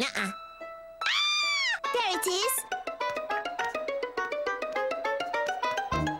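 A cartoon character's wordless voice: one long cry rising and falling in pitch about a second in, then a shorter wavering one. Lively children's cartoon music of quick, short stepping notes follows.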